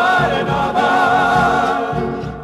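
Argentine folk vocal group singing long held notes together in harmony, the chord shifting about three-quarters of a second in.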